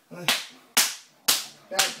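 Open-hand spanks on a person's backside: four sharp smacks about half a second apart.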